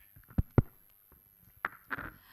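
Handheld microphone being handled as it is passed over, picked up through the PA: two sharp thumps close together about half a second in, then a couple of lighter knocks near the end.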